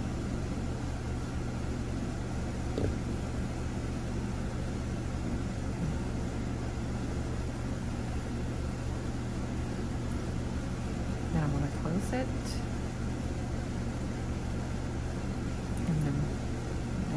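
A steady low mechanical hum, like a room fan or air conditioner, with a faint click or two from small jewelry pliers working wire loops. About 12 seconds in comes a brief vocal sound.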